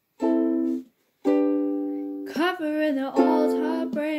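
A ukulele strummed in chords that are left ringing. There are two brief silent gaps in the first second or so.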